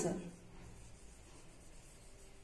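Marker pen writing on a whiteboard, a faint scratching rub as a word is written out.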